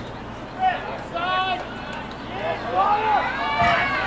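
Shouts and calls from people at a lacrosse game: short calls in the first half, then several voices calling over one another in the second half, over a steady low hum.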